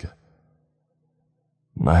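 Near silence for about a second and a half between spoken sentences, with only a faint, steady low hum; a man's narrating voice ends just as it starts and resumes near the end.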